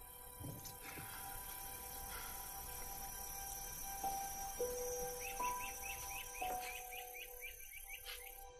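Quiet film soundtrack: soft held music notes that shift pitch every second or so, under outdoor ambience. From about five seconds in, a rapid series of short chirps comes in, about four a second.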